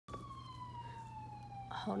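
A single high tone, like a distant siren's wail, slowly falling in pitch, over a steady low hum.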